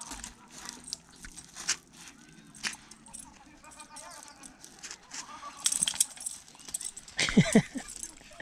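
Scattered crunches and rustles of a Doberman nosing and pawing at gravel and dry pine needles, with leash and tag jingles. A short burst of sliding, high-pitched voice sound comes about seven seconds in.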